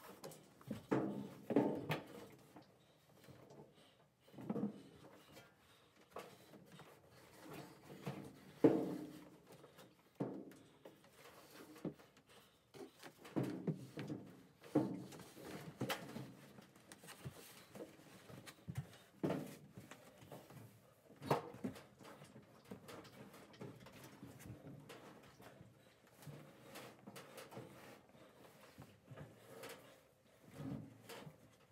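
Irregular knocks, bumps and scrapes as a top-loading washing machine is shifted and slid down wooden stairs, with a few sharper thuds, the loudest about nine seconds in and again about twenty-one seconds in.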